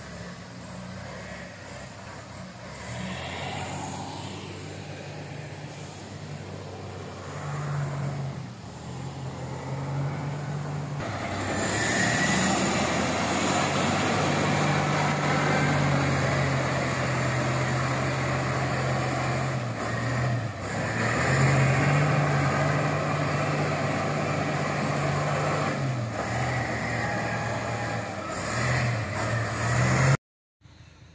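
Diesel engine of a wheel loader running, its pitch going up and down as it is throttled; it gets clearly louder about eleven seconds in as the machine comes close.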